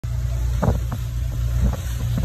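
A cabin cruiser's engines running steadily under way, a low drone, with a few brief thumps from the hull on the water.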